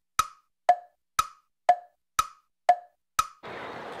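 Edited-in tick-tock sound effect: seven sharp wood-block-like ticks, two a second, alternating between a lower and a higher pitch like a clock, with the other sound silenced in between. Faint outdoor background noise returns near the end.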